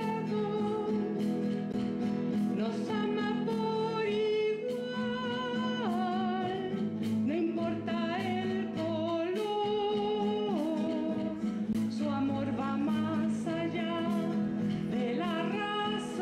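Live song: a singer's melody, with vibrato and slides between notes, over acoustic guitar accompaniment.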